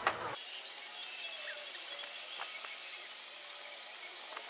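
Outdoor café ambience: a sharp click right at the start, then a steady high hiss with a few faint clinks of dishes and cutlery at the table.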